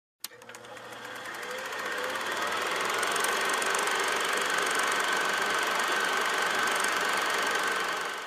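Film projector sound effect: a steady mechanical whirr with a fine rapid clatter and a faint steady whine. It starts with a click, swells over the first few seconds, holds steady, and begins to fade near the end.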